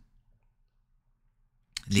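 Near silence: a pause in a man's speech, with only a faint low room hum. His voice trails off at the start and picks up again near the end.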